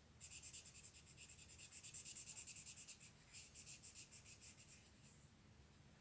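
Felt-tip marker scribbling quickly back and forth on paper as a shape is coloured in: faint, rapid strokes, several a second, with a brief pause a little past the middle, stopping about a second before the end.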